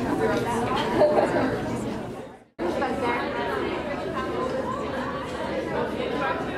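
Many people chattering at once in a crowded hall, with no single voice standing out. The chatter fades out about two seconds in, breaks off for a moment, then comes back at the same level.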